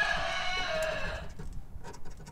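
A drawn-out animal call of several steady pitches, lasting about a second and a half, the lowest pitch dropping partway through. Faint scratching of a coin on a scratch-off lottery ticket follows.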